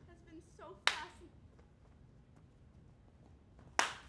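Two single sharp hand claps, one about a second in and one near the end, ringing briefly in the hall. A short spoken phrase comes just before the first clap.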